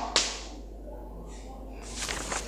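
A short, scratchy chalk stroke on a blackboard just after the start, then low room noise; near the end, a brief rustle of paper being picked up.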